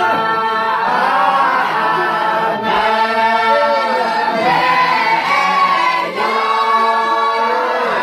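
A group of men singing together unaccompanied, in long held notes that slide between pitches, with short breaks for breath.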